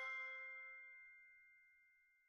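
A single bell-like chime note from a short musical jingle, struck just before and ringing out, fading slowly away.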